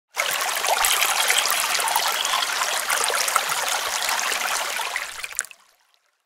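Running, trickling water with many small splashes, starting suddenly and fading out over its last half second or so.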